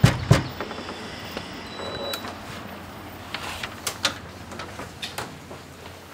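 Door sounds: two loud, sharp knocks or thuds right at the start, then a run of lighter clicks and knocks as a house door is opened and handled.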